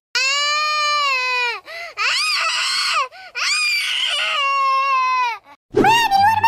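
A baby crying: three long wails, each about a second or more, each falling in pitch at its end, with short gasping catches between them.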